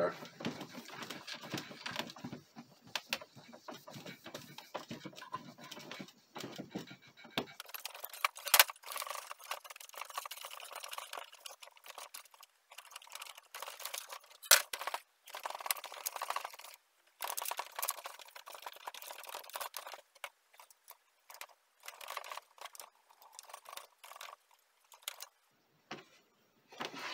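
A cloth rubbing and wiping over the metal chassis deck of an Elk EM-4 tape echo in irregular strokes, with a few short sharp clicks.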